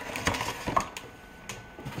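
A cardboard box and its packing being handled: a few scattered light knocks and clicks with some rustling.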